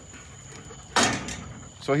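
A metal livestock pen gate clattering once about a second in, the noise fading over about half a second, with a man's voice beginning near the end.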